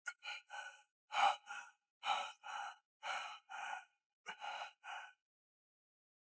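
A man breathing in short, shaky gasps and sighs, in pairs of in and out breaths about once a second, as he is hurt and bleeding from the head. The breathing stops a little after five seconds in.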